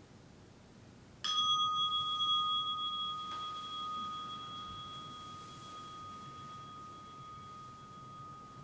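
A meditation bell struck once about a second in, ringing with one clear tone and a fainter higher overtone that slowly fade away. It marks the close of the sitting meditation.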